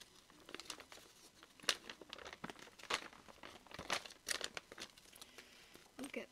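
Paper and card packaging being handled and folded back, crinkling with scattered light clicks and taps, one sharper tap just under two seconds in.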